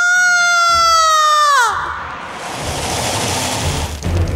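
A woman's long, loud, high-pitched scream, held for under two seconds, its pitch dropping as it breaks off. It is followed by a rushing noise with low thuds.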